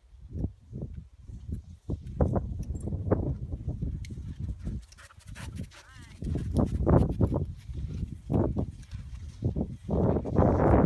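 Irregular, uneven bursts of dog sounds and voices on an outdoor trail, over a low rumble of wind on the microphone.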